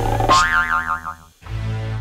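A cartoon boing sound effect, its pitch wobbling quickly up and down, over music with a low held bass note. It marks a comic stretching arm. Everything cuts out for a moment about one and a half seconds in, then the low note returns.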